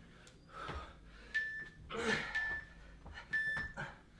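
Trainers thudding and squeaking on a rubber gym floor during a jumping exercise: a few landings, some followed by a short high squeak. Hard breathing can be heard between them.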